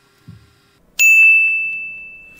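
A single bright computer notification chime about a second in, one clear high tone ringing and slowly fading: the signal that the video render has finished.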